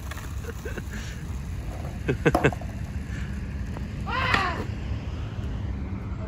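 Steady low outdoor background rumble, with short vocal sounds about two seconds in and again just after four seconds.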